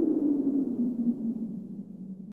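A single low hum from the outro's sound effect, sliding slightly down in pitch and fading toward the end.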